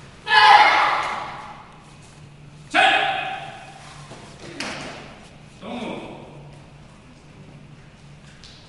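Two loud taekwondo kihap shouts from boys, the first just after the start and the second about two and a half seconds later, each ringing out in the hall's echo. A sharp crack follows about halfway through, then a shorter, lower shout.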